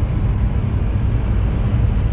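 Steady low rumble inside a VW Santana's cabin with its engine running.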